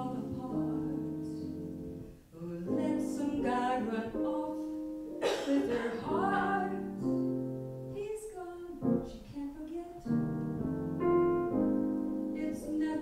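Woman singing a ballad in long held phrases while accompanying herself on grand piano, with upright bass underneath; a live small-group jazz performance.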